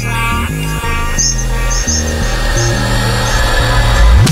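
IDM/drum and bass electronic track in a breakdown: a bass line of held notes changing pitch under plucked-sounding melodic tones and short high blips.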